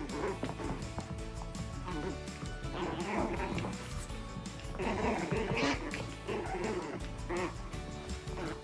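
Background music, with a chihuahua and a small puppy vocalising in several short outbursts as they play-fight.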